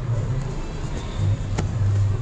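Background music whose low bass notes pulse on and off over a steady hum of a busy indoor market. A single sharp click comes about one and a half seconds in.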